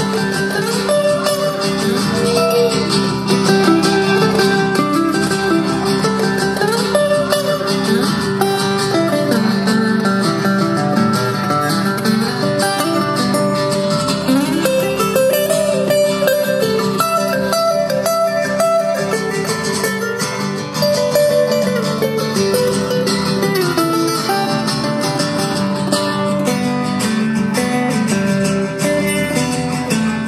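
Acoustic guitars playing an instrumental break: a moving lead melody over steady strummed chords, with no singing.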